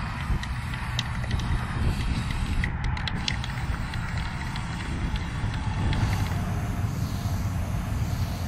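Wind buffeting the microphone with a steady low rumble, under the hiss of an aerosol spray-paint can being sprayed onto a car's metal body.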